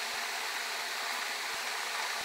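Steady, even background hiss with no distinct strokes or snips standing out.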